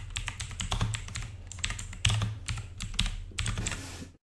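Fast typing on a computer keyboard: a quick, irregular run of key clicks.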